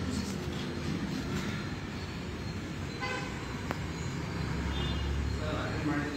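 A short vehicle horn toot about halfway through, over a steady low rumble of road traffic.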